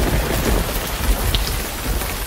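Rain-and-thunder sound effect: a steady hiss of rain over a low rumble.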